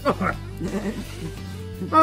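A person's rapid string of short 'oh' cries over background music with a steady drone.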